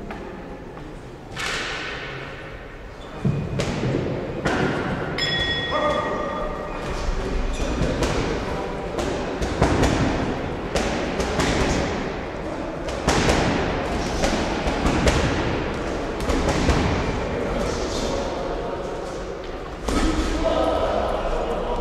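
Repeated thuds and knocks echoing in a large hall, over voices, with a short ringing tone about five seconds in.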